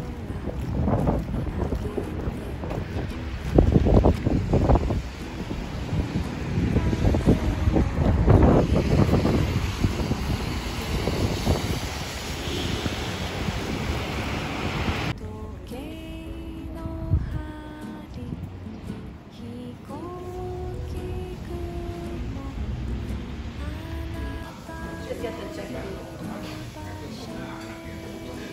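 Wind buffeting the microphone outdoors, with gusts that come in loud rumbling bursts. About fifteen seconds in the noise cuts off and quiet background music with a melody follows.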